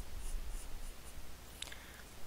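Graphite pencil (a Faber-Castell) sketching on drawing paper: a quick run of short, light scratching strokes, about four or five a second, then one longer, firmer stroke near the end.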